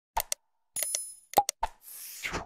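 Button-click sound effects: a few short clicks and pops, a brief bell-like ding about a second in, more pops, then a short whoosh at the end.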